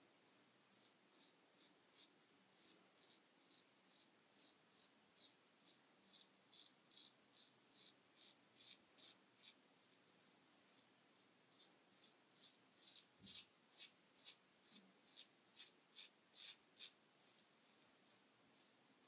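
Merkur Progress adjustable double-edge safety razor scraping through lathered stubble in short, quick strokes, about two to three a second. There is a pause of about a second midway, and one firmer stroke with a soft low knock comes about two-thirds of the way through.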